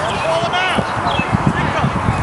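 High-pitched calls and shouts of youth soccer players and onlookers across an open field, no words clear, with irregular low thuds underneath.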